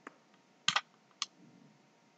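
Computer mouse button clicking: a sharp double click about three quarters of a second in and a single click a little past a second, as on-screen objects are selected and dragged.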